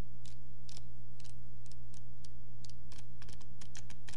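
Pages at the corner of a book flicked one at a time with the thumb: a slow, uneven run of separate paper clicks, closer together near the end, over a steady low hum. Flicked slowly like this, it stands for a low frame rate, few frames per second.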